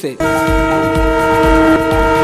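News-bulletin transition jingle: one held, steady chord over low bass hits about two a second.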